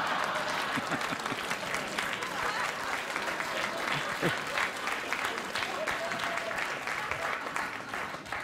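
Studio audience applauding and laughing, the clapping thinning out toward the end.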